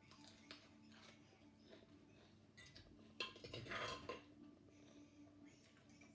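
A metal spoon clinking and scraping against a ceramic plate for about a second, midway, over a faint steady hum.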